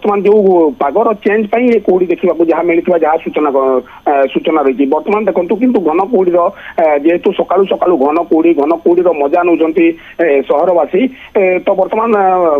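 Speech only: a man talking continuously over a telephone line, his voice narrow and thin.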